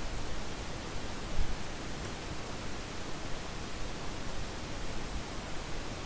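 Steady hiss of microphone background noise, with a faint click about two seconds in.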